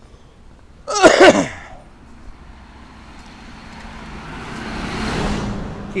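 Road vehicle approaching and passing close by, its noise swelling over about three seconds to a peak near the end, then falling away. About a second in, a short loud vocal burst, and a cough at the very end.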